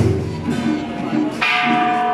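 Temple-procession percussion: a heavy struck beat of drum and gong-like metal about every second and a half, each hit leaving ringing tones. A steady held tone comes in with the second beat.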